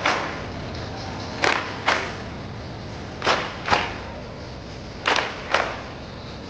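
A group clapping in unison in time with an exercise routine: sharp double claps, the two about half a second apart, repeated four times roughly every two seconds.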